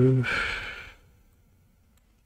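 A man's voice trails off, then he lets out a breathy sigh lasting under a second.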